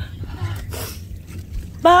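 Wind buffeting the microphone with a low, uneven rumble, then near the end a woman's voice starting a long, drawn-out "bye".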